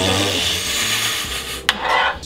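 Butter sizzling as it melts in a hot frying pan, a steady hiss that fades out over about a second and a half, followed by a single sharp click of the spoon against the pan.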